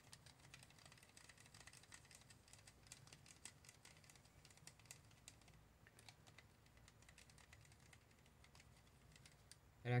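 Faint, irregular light clicks and scrapes of a wooden stir stick against the inside of a small cup as tinted polyurethane resin is stirred, over a faint steady low hum.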